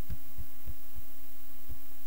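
A steady electrical hum under a handful of soft, low thumps, about five in two seconds, like bumps on the desk or microphone.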